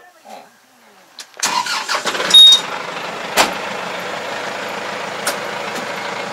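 Kubota tractor's diesel engine starting about one and a half seconds in, loudest as it catches, then idling steadily. A brief high beep sounds as it starts, and a sharp click comes about halfway through.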